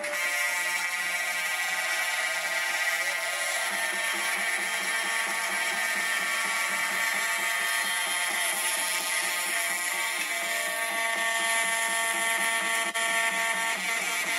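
Background music: a sustained, held chord of several steady tones, with a new lower note coming in about ten seconds in.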